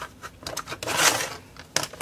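A paper scrap sliding and scraping over a plastic paper trimmer's base as it is positioned under the arm: one scraping swish about a second in, then a sharp click near the end.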